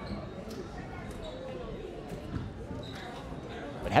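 A basketball bouncing a few times on a hardwood gym floor, over a low murmur of crowd chatter in the hall.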